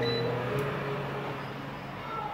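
A short, high beep from a Cosori air fryer's touch panel as its start button is pressed, with the air fryer running steadily. Soft background music plays underneath.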